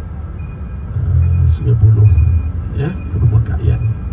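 A man's voice over a bus's microphone and loudspeakers, with the bus's engine and road rumble running underneath.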